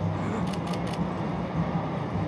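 Outdoor street ambience: a steady low rumble, with three short faint clicks close together about half a second to a second in.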